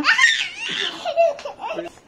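Children laughing and giggling during playful wrestling, a loud high burst of laughter at the start followed by shorter broken giggles.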